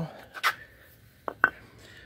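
A red brick knocked on concrete: one sharp knock about half a second in, then two quick knocks a little later.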